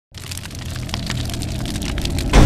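Cinematic logo-intro sound effect: many small crackles over a low rumble that slowly grows louder.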